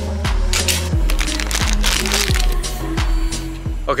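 Background music with a steady beat: deep bass hits that drop in pitch, about three every two seconds, with hi-hat ticks above.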